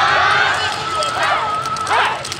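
A group of yosakoi dancers shouting calls together in high voices, with the clack of wooden naruko clappers in their hands.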